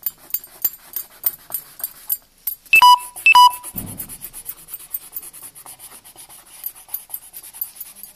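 Coloured pencil shading on paper in quick, even strokes, about five or six scratches a second. About three seconds in, two short, loud electronic beeps sound half a second apart, and then the shading goes on.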